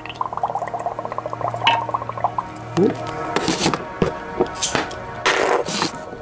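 Background music over an oxyhydrogen (HHO) torch flame burning under water, its gas bubbling from a brass-shielded tip, with a fast crackle in the first two seconds and two louder noisy bursts about three and five seconds in.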